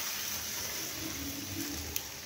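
Marinated chicken and sliced onions sliding from a bowl into a frying pan: a quiet, steady wet hiss with a light click near the end.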